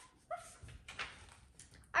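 A child imitating a puppy: two short, faint whimpering yips.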